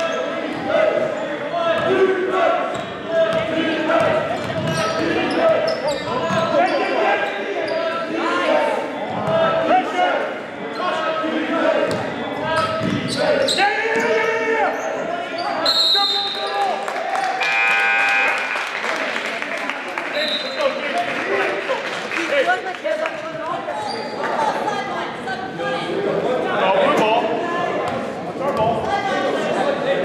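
Basketball bouncing on a gym floor during game play, with players and spectators talking throughout.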